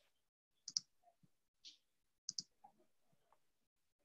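Near silence broken by a few faint, short clicks, two close pairs among them, scattered through the first three seconds.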